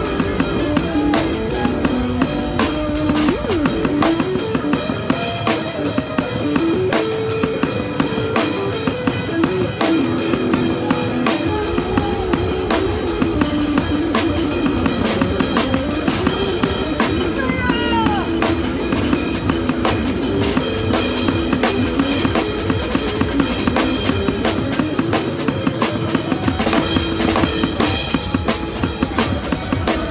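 Live electric guitar and drums: a melodic electric guitar line over a steady rock beat on snare and cymbals, with sliding guitar notes about sixteen to eighteen seconds in.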